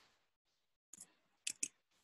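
A few faint computer keyboard keystroke clicks: two about a second in, then two more close together half a second later.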